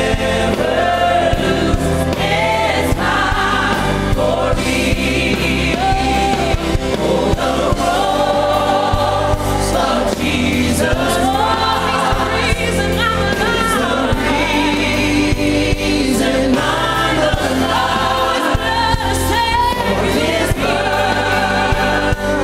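Gospel choir singing with a woman's lead voice on a microphone, backed by a band with steady bass notes.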